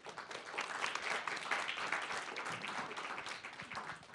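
Applause from an audience and panel: many hands clapping. It builds up in the first second and thins out near the end.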